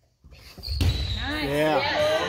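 A volleyball hit with a low thump about a second in, echoing in a gymnasium, followed by a drawn-out voice calling out.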